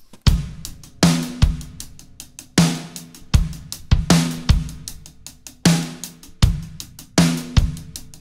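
Soloed recording of an acoustic drum kit played back straight from Pro Tools: a steady groove of kick, snare, hi-hat and cymbals, the pattern repeating about every three seconds. The room mics are being brought up to take the close-miked kit from dry to a bigger, roomier sound.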